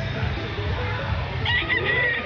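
A young Sweater gamefowl rooster (a broodstag) starts crowing about one and a half seconds in, a loud pitched crow that carries on past the end.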